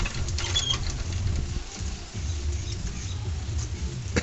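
Scattered light metallic clicks and clinks as a small-block Chevy engine hanging on a hoist chain is guided by hand into the engine bay, over a steady low rumble.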